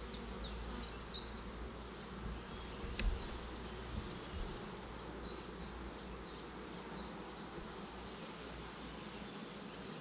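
Honeybees buzzing in a steady hum over an opened hive whose frames are being lifted out. A single light click about three seconds in.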